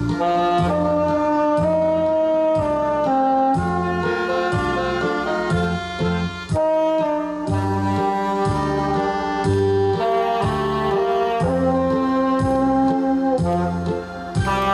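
Tenor saxophone playing a slow melody of long held notes over a recorded backing track with a steady bass beat.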